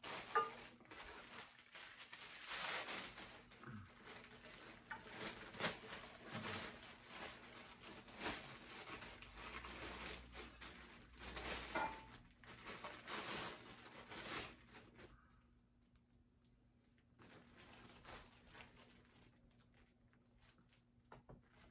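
Thin plastic packaging crinkling and rustling in irregular bursts as metal frame poles are pulled out of their bags, quieter from about three-quarters of the way through.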